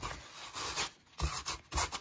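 Sandpaper rubbed over white denim jeans to fray the cut edges: one long scraping stroke, then a few quicker strokes.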